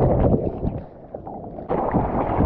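Whitewater rushing and splashing against a surfer's GoPro. The sound drops and goes dull for about a second in the middle, then comes back loud as the camera clears the water.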